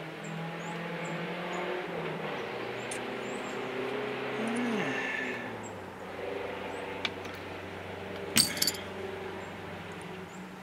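Sharp clicks of flint pieces knocking together as a freshly struck flake and the biface are handled, the loudest pair about eight and a half seconds in, over a steady engine-like hum and faint high bird chirps.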